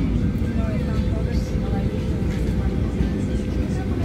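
Steady low rumble inside the cabin of a Boeing 737-900 standing on the ground, with a constant hum running under it. Faint passenger voices murmur in the background.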